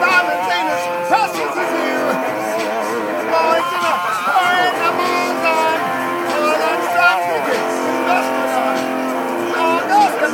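Electric guitar played live, with a man singing over it without clear words.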